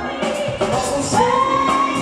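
A live funk-soul band plays, with singing over drums, congas, keys and bass. A long note is held from just past halfway.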